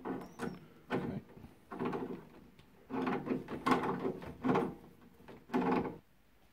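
Water pump pliers tightening a fitting inside a combi boiler, giving a series of about seven short creaks, each under half a second, as the fitting is turned.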